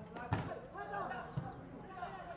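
Footballers' voices calling across the pitch, with a sharp thud of a football being kicked near the start and a duller thump about a second later.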